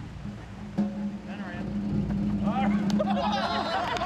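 Several people's voices calling out together, building up over the second half, over a steady low hum.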